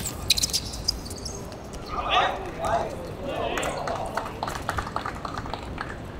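Football players calling out to each other during play on a hard outdoor court. Sharp knocks of the ball being kicked come in the first second and again later on.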